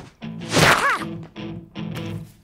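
Cartoon sound effect: a loud swishing whoosh with a pitch that slides up and down, about half a second in, followed by a few short comic music notes.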